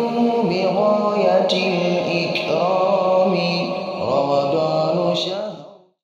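A solo voice chanting in long held notes that glide up and down from phrase to phrase, fading out near the end.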